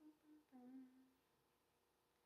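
A woman humming softly to herself, two short notes then a longer, lower one, in the first second or so. The rest is near silence.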